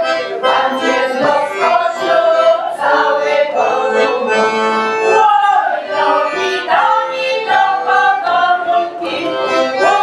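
Accordion playing a lively traditional folk tune without a pause, its melody moving from note to note.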